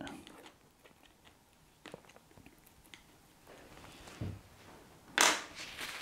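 Faint scraping and light taps of a palette knife picking up oil paint from a palette, between long quiet stretches; a short, louder rush of noise comes about five seconds in.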